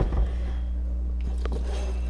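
Faint rustle and scrape of dried hydrangea stems being handled and set into a glass vase, over a steady low hum.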